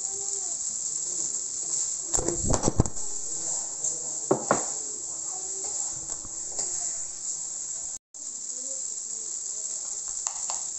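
Rice, cabbage and tomato stir-frying in a wok: a steady high sizzle, with the metal spatula scraping and knocking against the pan in a cluster about two seconds in and again a little after four seconds. The sound drops out for a moment about eight seconds in.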